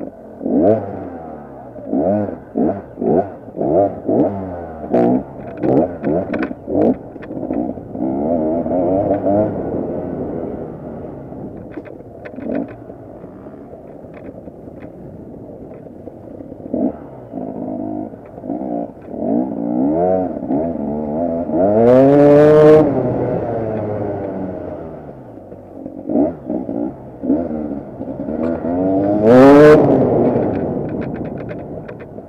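KTM 250 EXC two-stroke enduro engine blipped in quick short bursts of throttle, about ten in the first eight seconds, while the bike picks over rocks and concrete blocks. It then runs more steadily, with two long rising revs, one about two-thirds of the way through and one at the end.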